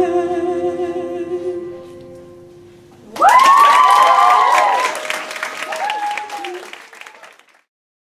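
A woman's sung voice holds a long final note with a slight waver, fading out within the first two seconds. About three seconds in, an audience breaks into applause and whooping cheers, which die away near the end.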